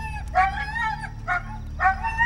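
A dog whining in a run of high, drawn-out whimpers, four cries with short breaks between them, one of them very brief.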